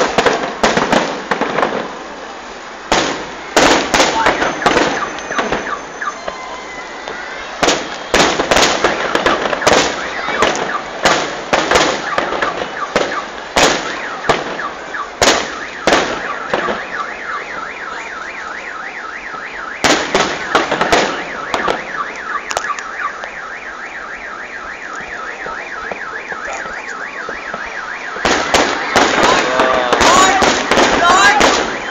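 A fireworks display: a rapid series of bangs and crackles, dense in the first half, thinning out, then picking up again near the end. In the quieter stretch between, an alarm tone repeats quickly over and over.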